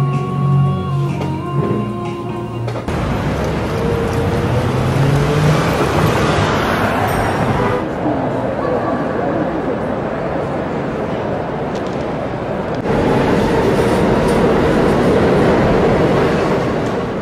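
A sequence of city noise recordings. First, café background music and chatter; about three seconds in it cuts to the steady noise of a busy train station. A few seconds before the end comes the louder noise of a subway train in a station.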